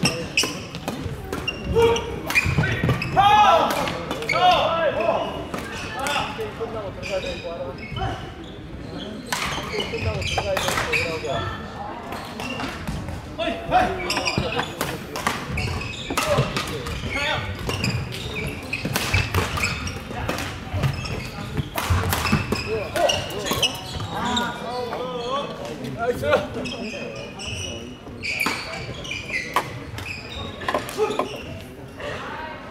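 Badminton play echoing in a large gym hall: repeated sharp racket hits on a shuttlecock and footfalls on the wooden court, over a steady background of many voices.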